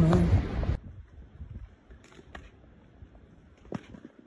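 Wind noise on the microphone and a person's voice, cut off abruptly under a second in; then near quiet with a few faint clicks and one sharper tap near the end.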